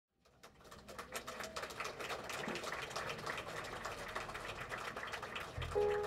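Irregular scattered clicks and clatter in a room, with no pitch to them. Near the end a piano starts playing, with low bass notes under it.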